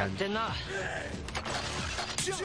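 Audio of a superhero TV episode: a short line of dialogue, then mechanical clicks and creaks of a handheld transformation gadget being worked as a transformation is set up.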